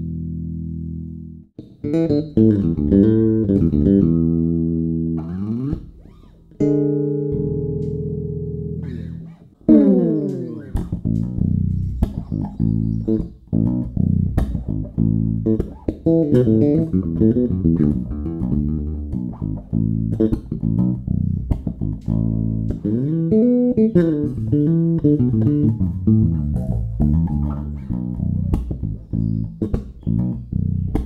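Five-string Warwick Rockbass Corvette electric bass played solo through its active TB Tech Delta preamp, on old, well-used strings. It opens with two long held notes, then runs into a busy line of quickly plucked notes. The EQ is flat at first, with the preamp's low-mid turned up to full in the later part.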